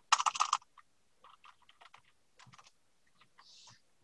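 Computer keyboard typing: a quick run of keystrokes in the first half second, then a few faint scattered clicks.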